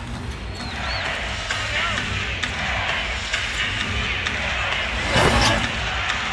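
Basketball arena crowd noise during live play, with music playing over it. A short, louder burst comes about five seconds in.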